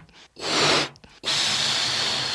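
Rushes of hissing air in bursts: a short one of about half a second, then a longer one of about a second and a half starting a little past the middle, each sounding in step with a balloon-shaped letter appearing in the logo.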